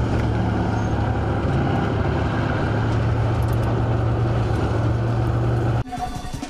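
Heavy military engines running steadily as an armoured tracked vehicle crosses a pontoon bridge with bridge boats alongside: a low, even hum. It cuts off suddenly near the end.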